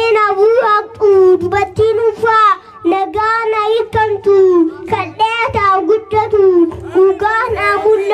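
A young boy singing into a microphone in a high voice. He sings in short phrases of about a second each, with brief breaks between them.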